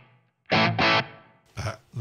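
Electric guitar played through the NUX Trident's JCM800 amp model with its Studio Comp compressor: two quick chord stabs about half a second in, ringing out and fading, with a clean, springy tone.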